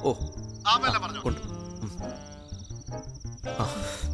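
A steady, high, finely pulsing insect trill, like crickets, runs over soft background music. A short 'ooh' is heard at the start.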